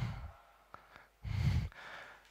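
Breaths into a close microphone: an exhale fading out at the start, a faint click, then a second audible breath about a second and a half in.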